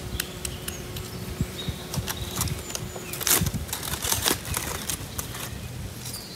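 Shell of a hard-boiled egg being cracked and peeled by hand: an irregular run of small crackles and clicks, thickest a little past the middle.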